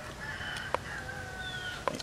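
Faint, drawn-out bird call in the background, lasting about a second and a half and dipping slightly in pitch near the end, with two small clicks.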